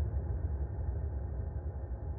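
A deep, muffled rumble with heavy bass, slowly fading.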